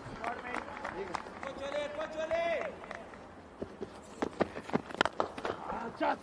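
Open-air cricket-ground field sound: one drawn-out shout from a player about one and a half seconds in, then a scatter of sharp clicks in the second half.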